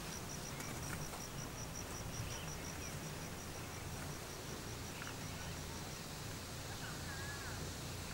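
Outdoor ambience dominated by an insect's high chirp, evenly pulsed at about four a second, which stops about six seconds in. A few faint bird calls sound over a steady low background rumble.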